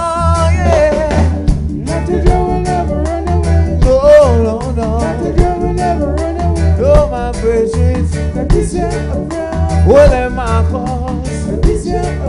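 Live reggae band playing: a sung melody over a heavy, steady bass and regular rhythmic strokes from the band.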